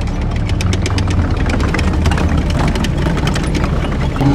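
Tank engine sound effect: a steady low rumble with a rapid, irregular clatter of clicks over it, like a tank moving on its tracks.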